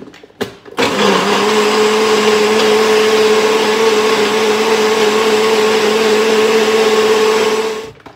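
Nutribullet personal blender running steadily at one pitch for about seven seconds, blending a shake of frozen berries and liquid. A couple of knocks from the cup being set on the base come just before the motor starts. It stops just before the end.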